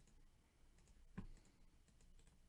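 Near silence with a few faint computer mouse and keyboard clicks, one louder click a little past a second in.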